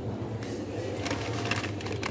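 Plastic snack packet crinkling and rustling in a hand as it is taken off a shelf: a dense run of small crackles from about half a second in, over a steady low hum.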